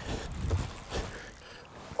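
Wind rumbling on the microphone over open water, with a few soft splashes and knocks in the first second, as a hooked largemouth bass comes up toward the boat. It goes quieter after about a second.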